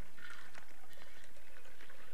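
Tea poured from a silver teapot into a china cup, a faint trickle with a few light clinks of china, over a steady low hum.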